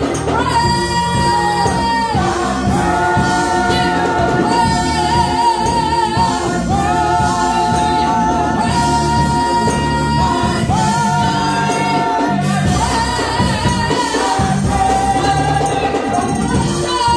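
A women's gospel praise team singing into microphones in long, held notes with vibrato over a steady low accompaniment.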